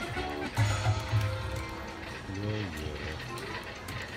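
5 Dragons poker machine playing its win music as the free-games feature ends and the win counts up to its total, with deep low beats in the first second or so.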